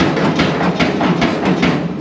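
Steel body panel being chiselled and worked loose from a car shell: a series of sharp metal knocks, a few a second, over rough scraping and rattling of sheet steel.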